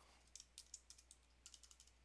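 Faint typing on a computer keyboard: quick runs of separate keystrokes as a customer number is entered into a form.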